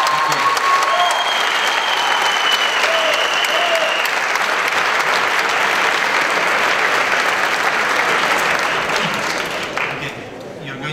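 Large audience applauding, loud and steady, dying down near the end.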